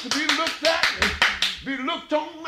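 Hand-clapping in a fast steady rhythm, about five claps a second, along with raised voices; the clapping stops near the end.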